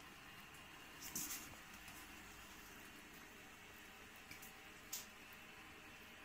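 Faint wet chewing and lapping of several house cats eating from bowls, with a few soft clicks, the clearest about a second in and just before five seconds.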